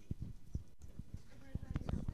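Irregular knocks and clicks, a few a second, with faint voices.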